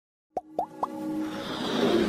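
Animated logo intro sound effects: three quick rising plops about a quarter second apart, then a swelling whoosh building over a sustained music pad.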